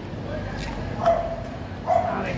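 Eleonora sulphur-crested cockatoo giving short, flat-pitched calls: a faint one early, a loud one about a second in, and another near the end.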